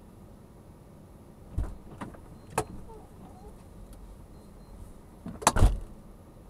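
Clicks and knocks of a car door being worked, then a loud double thump near the end as the door shuts.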